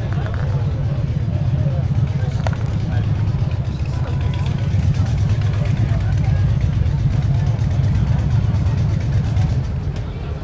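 Motorcycle engine running with a steady low rumble, under the chatter of voices around it, and a single sharp click about two and a half seconds in.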